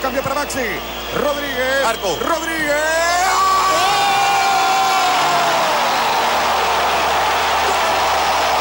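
Broadcast football commentator shouting excitedly, then one long drawn-out goal call held for about three seconds, over stadium crowd cheering that swells about halfway through and stays loud.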